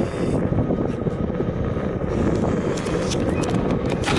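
Boosted electric skateboard rolling over parking-lot asphalt: a steady rumble of wheels on rough pavement, mixed with wind rushing over the microphone.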